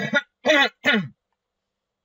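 A woman clearing her throat: three short voiced bursts in quick succession in the first second, each falling in pitch.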